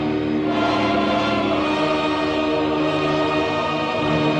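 Film score music with a choir singing long held notes.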